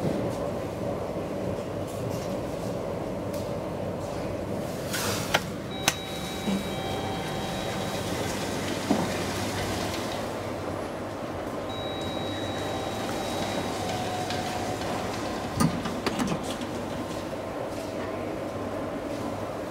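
IGV hydraulic elevator running with the car in motion: a steady mechanical hum. A few sharp clicks and knocks come through, and two faint high steady tones each last about two seconds partway through.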